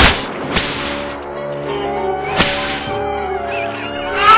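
Whip-crack sound effects: a loud sharp crack at the start and another about two and a half seconds in, as the whip lashes around its target, over background music.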